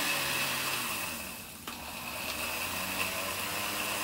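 Countertop electric blender running on a thick red onion mixture with no water added. Its motor sound sinks and quiets about a second and a half in, with a click, then picks up again and runs steadily.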